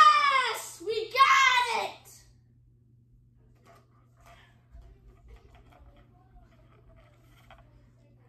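A boy shouting in triumph: two long, high yells, each falling in pitch, in the first two seconds. After that there are only a few faint taps.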